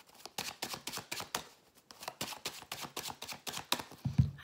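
Hand-shuffling a small deck of Sibylle oracle cards: a quick run of crisp card clicks, with a short break about a second and a half in.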